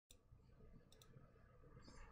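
Near silence: faint room tone with a few small clicks, one at the very start and two close together about a second in.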